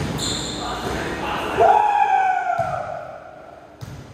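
Indoor pickup basketball game: a ball bouncing on the court, with a short high sneaker squeak just after the start. Near the middle a player gives a long, loud call that rises briefly and then falls slowly in pitch, echoing in the hall.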